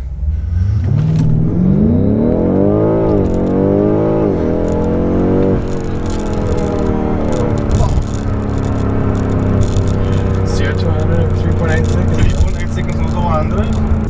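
BMW M5 Competition's twin-turbo V8 at full throttle from a standstill, heard from inside the cabin: the engine note climbs steeply and drops back at two quick upshifts. About five and a half seconds in the throttle is lifted, and the engine falls to a steadier, slowly sinking note as the car slows, the run cut short before the quarter mile.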